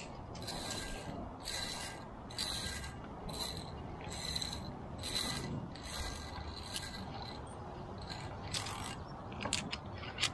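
Metal pulley rolling along a steel safety cable in short squeaky rasps, about one a second, then a few sharp metallic clicks near the end.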